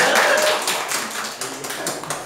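A group of people clapping their hands, a quick run of claps that fades off toward the end.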